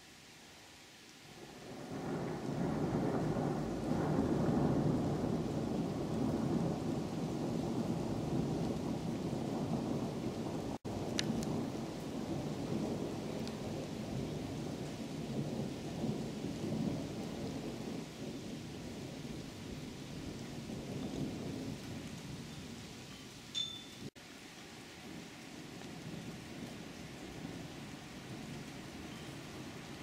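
A long, low roll of thunder that swells about a second and a half in, stays loud for a dozen seconds and slowly dies away.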